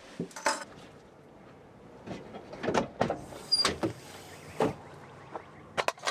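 A parked car's door or rear hatch and gear being handled: a scattered series of short knocks and clunks over a faint steady background.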